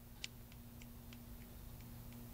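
Near silence: room tone with a faint, steady low hum and a string of faint, irregular ticks, a few each second.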